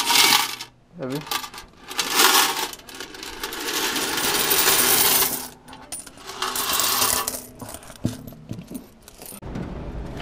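Coins being poured out of a vending machine's metal coin box into a zippered cloth bag, jingling and rattling in about four pours, the longest lasting about two and a half seconds.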